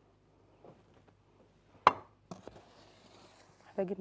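Quiet room tone broken by one sharp knock about two seconds in, then a few small clicks and a faint hiss; a voice starts just before the end.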